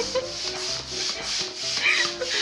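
An air pump running, blowing a steady rushing hiss of air through a hose into a latex balloon as it inflates.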